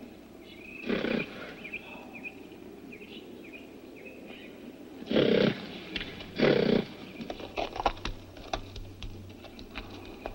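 Horse snorting in three short blasts, about a second in and twice more around the middle, with birds chirping early on. Hooves clop on stony ground toward the end.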